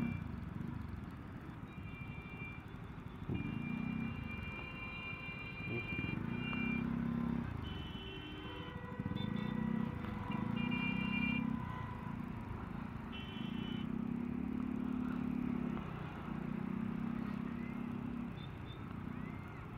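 A person humming or singing inside a motorcycle helmet in short held phrases of a second or two, over the steady hum of slow traffic and the motorcycle's engine.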